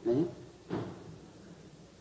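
A brief voice sound at the start, then a short breathy sound a moment later, over faint recording hiss in a pause between spoken phrases.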